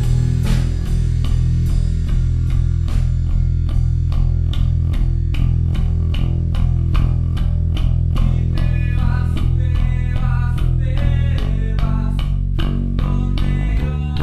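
Instrumental post-rock: bass guitar and electric guitar play a steady, evenly pulsing figure, with light drums. The bass line shifts to a new note near the end.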